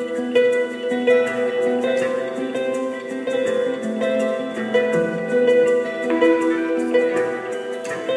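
Live acoustic band music: plucked-string notes pick out a gentle melody over sustained chords.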